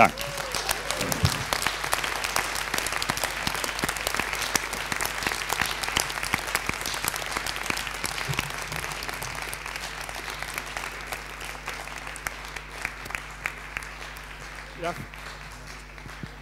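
Audience applauding, a dense clatter of many hands clapping that slowly dies away toward the end.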